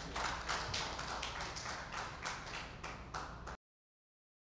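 A run of irregular taps and clicks, about three or four a second, in a room. The sound cuts off abruptly about three and a half seconds in.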